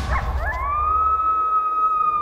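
A coyote howling: one long call that glides up about half a second in and then holds a steady pitch.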